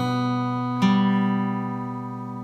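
Crafter acoustic guitar played fingerstyle: notes ring from the start, a new chord is plucked just under a second in, and it is left ringing and slowly fading.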